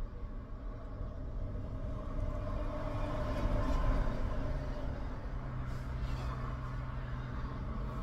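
Steady low rumble of a car heard from inside the cabin, with a man's wide yawn swelling about three to four seconds in. A steady low hum joins a little after five seconds.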